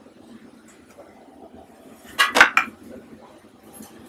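A brief clatter of hard objects clinking together, several quick strokes about two seconds in, over a quiet background.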